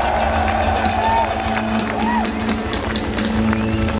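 Live band music played loud through a festival PA, heard from inside the audience, with a voice over it and a run of sharp claps or beats from the crowd clapping along.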